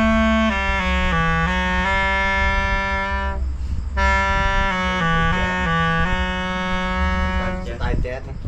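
Clarinet playing a short melodic phrase of held notes that step downward. It pauses briefly a little past three seconds in, then plays the phrase again.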